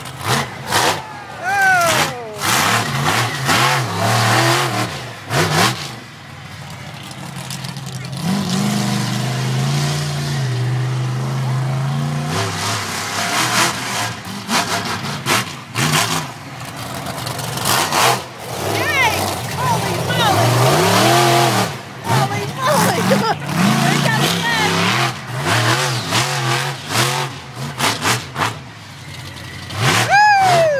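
Monster truck engine revving hard again and again, pitch rising and falling as it drives up onto and over a car, with repeated sharp thuds.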